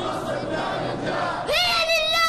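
A crowd in a hall shouting and cheering, a dense wash of many voices. About one and a half seconds in, it cuts to a boy's voice chanting through a microphone, high and held steady.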